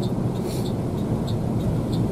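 Intercity tri-axle bus running at road speed, heard from inside the cabin: a steady low engine and road drone, with scattered light clicks and rattles over it.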